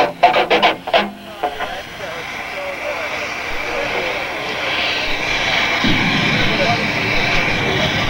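Metal band opening its live set: a few short stabbed chords, then a wash of noise that swells steadily louder, with a low drone joining about six seconds in.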